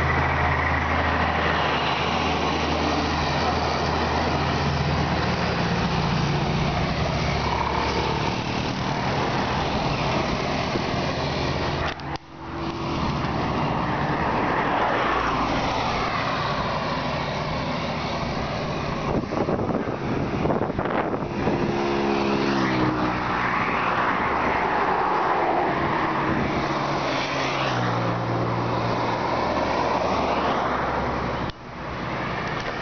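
Wind rushing over a microphone carried on a moving bicycle, mixed with road traffic: cars and trucks passing, their engine tones rising and falling as they go by. The sound dips briefly about twelve seconds in.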